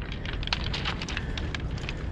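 Irregular light crackling and clicks over a steady low rumble, typical of wind and handling noise on a handheld microphone outdoors.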